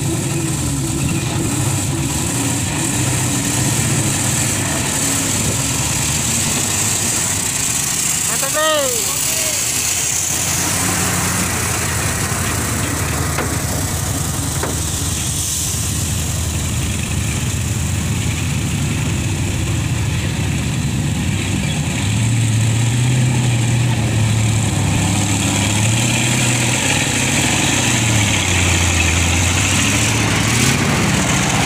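Heavy diesel tanker-truck engines running under load as the trucks crawl through deep mud ruts. About nine seconds in there is a brief rising-and-falling shout. In the last third the engine note gets louder and its pitch wavers up and down as the truck revs.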